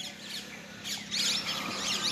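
Quick clusters of high-pitched chirps from small birds, starting about a second in, over a faint steady hum.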